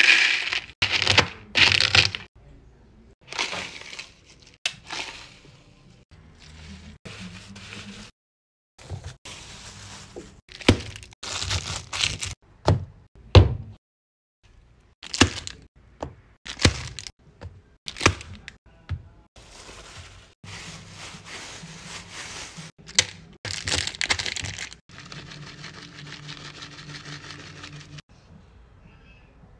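Hand food-prep sounds in short separate bursts: snacks crackling and breaking, crumbled pieces poured from a plastic bag into a plastic tub, and a plastic spoon working a spread over a plastic sheet.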